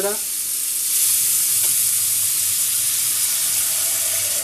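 Kitchen tap running a steady stream of water into a plastic salad spinner bowl that sits in a stainless steel sink, filling it with water.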